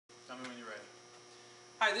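Steady low electrical hum, with a brief voice-like sound about half a second in and a man's voice starting right at the end.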